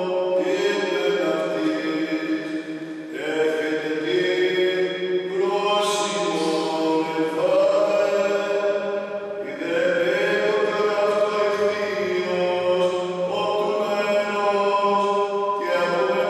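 A Greek Orthodox priest chanting the Gospel reading solo, each phrase held on long, level notes with short breaks between the phrases.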